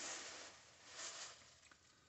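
Faint rustling of a fleece blanket being handled and shaken open, in two brief rustles, the second about a second in.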